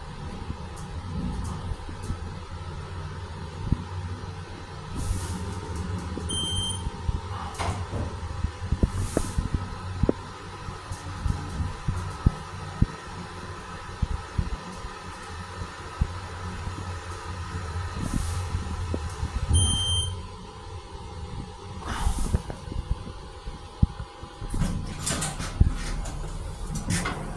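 Mongrain hydraulic elevator car travelling down with a steady low hum, with a short high electronic beep twice, about 6 and 20 seconds in. The hum drops away as the car stops at the floor, and near the end the car doors slide open with clicks and rattles.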